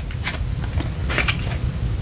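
Tarot cards being handled: a card drawn from the deck and flipped over, with a couple of soft clicks and light scrapes of card on card.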